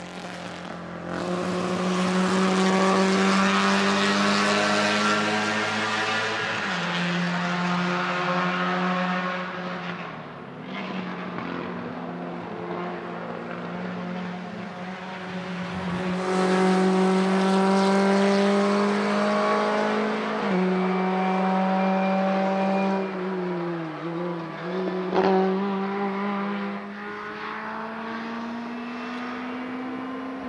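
Small-capacity race car engines running at full throttle, their note climbing steadily and dropping at each upshift, about a quarter and again two-thirds of the way through. Near the end one engine note dips and comes back as a driver lifts off and gets back on the power.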